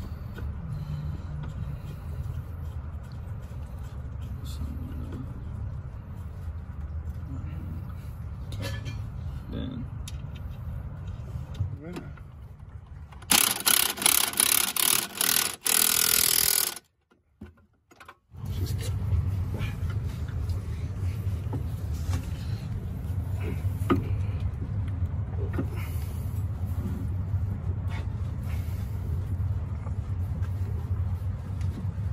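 Impact wrench hammering nuts tight onto the bolts that clamp a coilover strut to the steering knuckle: several short bursts about 13 seconds in, then one longer run. A steady low hum lies underneath.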